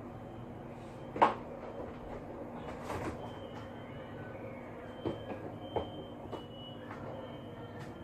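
Steady background noise with a few short knocks and clunks, the loudest about a second in and smaller ones around three, five and six seconds in.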